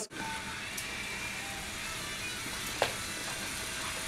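Steady background noise of the room, with one sharp click about three seconds in.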